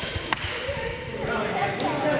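Indistinct chatter of players echoing in a large gymnasium, with a sharp thud of a bouncing ball right at the start and again about a third of a second in.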